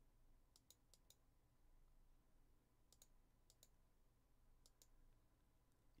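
Near silence, broken by a few faint, scattered computer mouse clicks.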